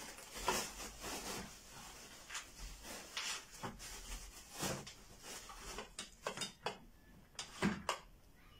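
Handling noises from assembling a gaming chair: scattered knocks, clicks and rustling of plastic wrapping as the seat and armrest are worked by hand, with a quick run of clicks near the end.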